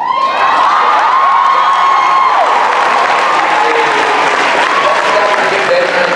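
A large audience breaks suddenly into loud applause and cheering, with several high-pitched screams and whoops over the clapping, easing off near the end.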